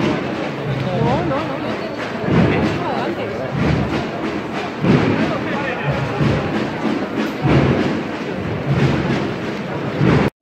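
Holy Week procession drums: bass drums (bombos) beating a slow, even pulse about once every second and a quarter, under a dense drum rattle, with crowd voices.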